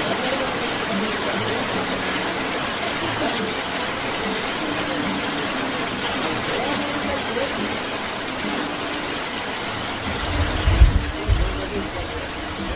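Heavy rain falling steadily, a continuous hiss. Near the end there is a short burst of low rumbling.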